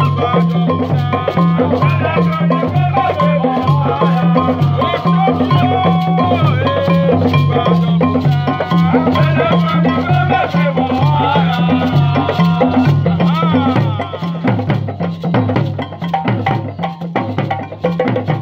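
Djembe hand drums playing a steady, repeating rhythm with voices singing over them. About fourteen seconds in the singing stops, and the drumming carries on alone, a little quieter.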